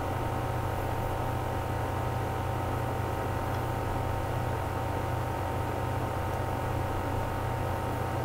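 A steady low hum with a few faint steady tones above it and light hiss, unchanging throughout. No distinct handling noises stand out.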